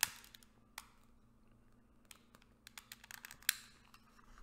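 Sharp clicks from a long-nosed butane utility lighter lighting a candle: one at the start, another under a second in, then a quick run of fainter clicks ending in a louder one about three and a half seconds in.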